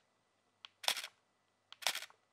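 Canon EOS R10 mechanical shutter fired twice, single shots about a second apart. Each release is a faint tick followed by a louder clack. It sounds cheap, fragile and toy-like.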